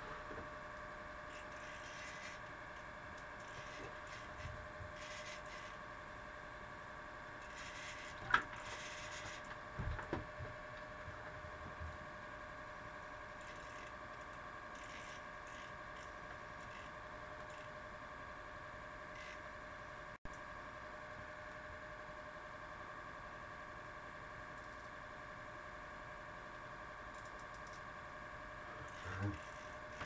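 A faint steady hum under scattered rustling from a person handling fishing tackle and clothing, with one sharp knock about eight seconds in.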